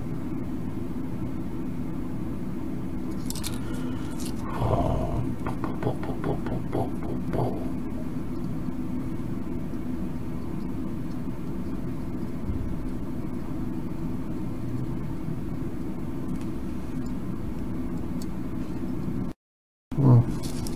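A steady low hum with a few light scrapes and clicks about four to seven seconds in, as a soldering iron tip and fingers work on the wire legs of a small LED cube. The sound cuts out completely for a moment just before the end.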